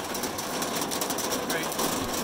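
Hail drumming on the roof and glass of a 1990 Jaguar XJS, heard from inside the stripped-out cabin: a dense, steady patter of countless small hits, really loud.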